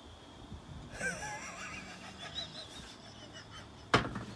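Faint stifled laughter and breathy snickering, followed by a single sharp knock just before the end.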